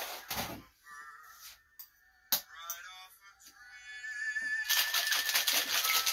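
Ice rattling in a metal cocktail shaker, shaken fast and hard for a cocktail, starting a little past halfway and going on to the end.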